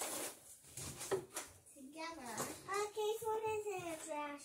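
A young child's voice making wordless, high-pitched sounds, one of them long and drawn out near the end, with a sharp tap about a second in.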